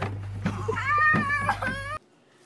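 A young girl's high, drawn-out wail, with a few knocks as she tumbles onto a plastic toddler slide. The wail starts a little under a second in and is held with a wavering pitch until it cuts off at the end.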